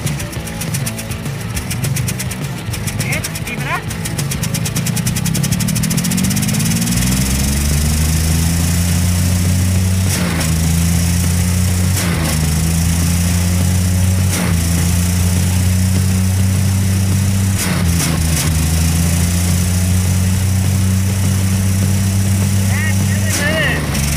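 Maruti Omni's small three-cylinder petrol engine revving up over a few seconds, then held steady at high revs, with a few brief clicks and dips along the way. It is being run hard enough for its exhaust pipe and silencer to glow red hot.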